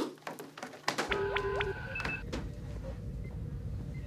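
Starship-bridge electronic sound effect. A few clicks, then about a second in a brief cluster of electronic beeps and gliding chirps over a steady low hum that starts with them and carries on.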